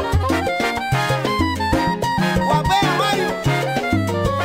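Salsa band playing an instrumental stretch of a guaguancó-style song, a bass line stepping under the melody lines.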